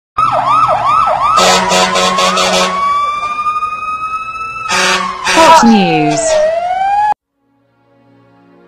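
Produced intro sting built from sound effects. It opens with a fast warbling siren, then a quick run of sharp hits, a long slowly rising tone, a whoosh and a falling glide, and it cuts off suddenly about a second before the end.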